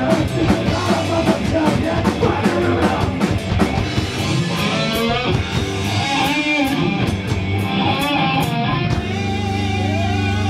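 Punk rock band playing live and loud: distorted electric guitar, bass and a drum kit with crashing cymbals. Near the end the drums stop and a held chord rings on.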